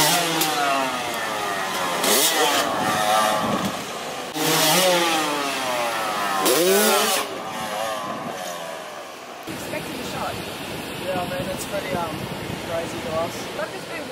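Motocross bike engine revving hard three or four times, each rev climbing sharply in pitch and then sliding back down. It fades out about nine and a half seconds in, leaving quieter voices.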